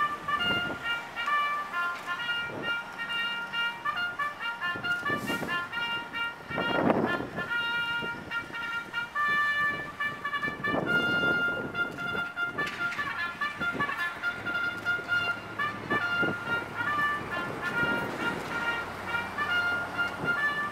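Brass music with long held notes plays steadily throughout, with a few short spells of rustling noise, the loudest about seven seconds in.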